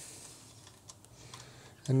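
A few faint, light metallic clicks as fingers thread the lock screw onto the top of a Holley carburetor's adjustable needle and seat.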